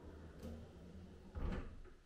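Soft-close kitchen drawer pushed shut, sliding quietly on its runners and closing gently without a slam, a little louder about one and a half seconds in.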